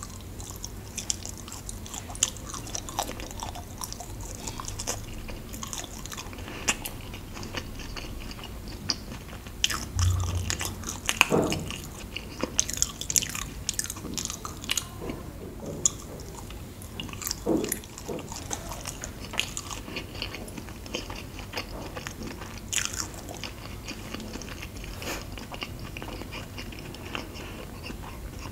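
Close-miked chewing and biting of luk chup, Thai mung bean paste sweets in an agar jelly coating. Many small sharp, wet mouth clicks, busiest about halfway through.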